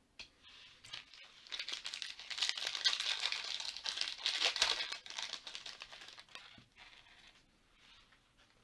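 A foil trading-card pack being torn open, its wrapper crinkling and ripping. The noise builds about a second and a half in, is loudest in the middle, and dies away a little more than a second before the end.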